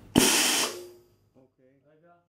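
Short burst of compressed-air hiss, about half a second, from the pneumatic dental injector as the inject button is pressed and the piston drives the heated Flexinylon into the flask; it dies away within a second.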